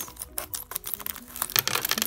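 Scissors snipping open a small plastic packet, with the plastic crinkling: a run of quick, irregular clicks and rustles.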